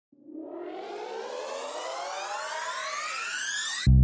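A rising electronic riser: a many-toned sweep that climbs steadily in pitch and grows louder for over three seconds. It cuts off suddenly as a bass-and-guitar music track comes in near the end.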